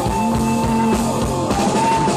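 Live rock band playing an instrumental passage: electric guitars holding long notes over bass and a steady drum beat, with no vocals.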